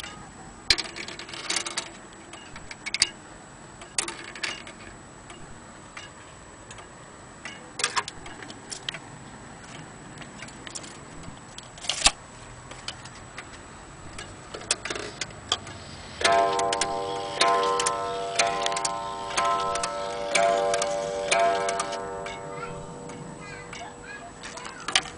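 Antique Vienna wall clock running with sharp ticking clicks. From about two-thirds of the way in, its striking train sounds a run of strokes about a second apart on its gong, each one ringing on into the next.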